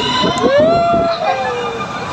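Riders screaming on a moving theme-park ride: one long, drawn-out cry that rises and then falls in pitch, over a busy background of other riders.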